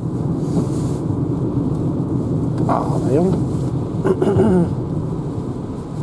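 Steady low road and tyre rumble inside the cabin of a Renault ZOE electric car driving on a wet road at about 72 km/h, with no engine sound above it. A few brief voice sounds come in the middle.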